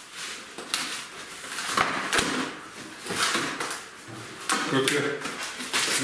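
Cardboard packaging of a flat-pack table being slit with a utility knife and handled: bursts of scraping and rustling, with two sharp clicks about two seconds in. A short murmured voice comes in near the end.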